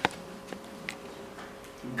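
Whiteboard marker tapping on a whiteboard while writing: a few short sharp ticks, the loudest at the very start and smaller ones about half a second and a second in, over a faint steady room hum.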